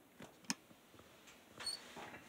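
Faint handling noise of an acoustic guitar being settled into playing position: a sharp click about halfway in, then a brief rustle with a high squeak near the end.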